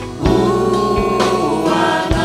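Church choir singing with a live band. The voices hold long chords over occasional drum strikes, and a new chord comes in about a quarter second in.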